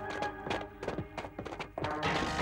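Dramatic background score with held tones under a rapid, irregular run of sharp knocks.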